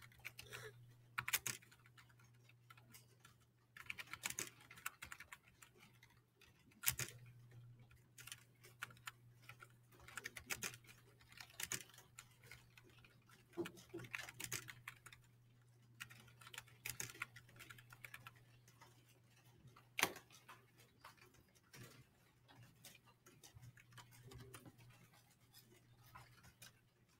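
Faint, irregular clicks and taps, loudest about 7 and 20 seconds in, over a low steady hum.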